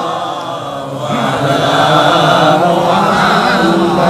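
A man's voice chanting Arabic blessings on the Prophet in a long, drawn-out melodic line through a microphone.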